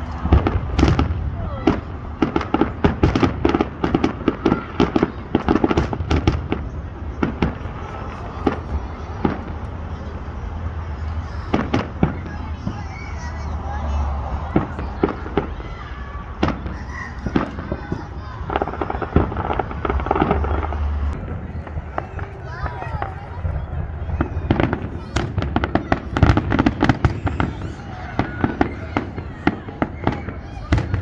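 Aerial fireworks show: rapid volleys of bangs and crackling reports, packed close together in the first several seconds and again near the end, with sparser bangs in between.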